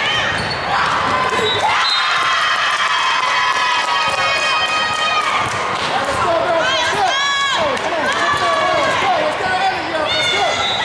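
Indoor volleyball play on a hardwood gym floor: ball hits, shoes squeaking on the court and players' shouts and calls, echoing in a large hall.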